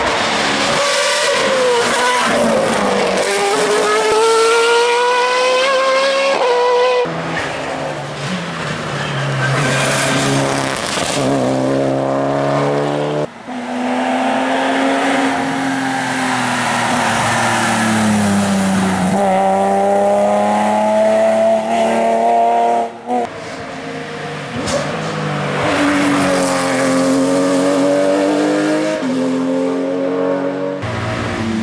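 Race car engines at full throttle on a hill climb, revving up through the gears with sharp drops in pitch at each upshift. A single-seater formula car and, in the last few seconds, a Porsche 911 race car are heard, with some tyre squeal.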